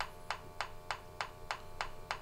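SENSIT GOLD G2 combustible-gas detector ticking evenly, about three ticks a second, over the faint steady hum of its sampling pump. The steady tick rate comes with no gas at the inlet, the display reading zero.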